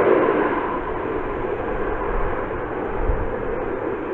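F-35 Lightning jet's engine roar heard from the ground, a steady rushing rumble that slowly fades as the aircraft flies on.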